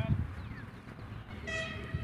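A short honk from a horn about a second and a half in, one steady pitch with many overtones, lasting about half a second. A low thump comes right at the start.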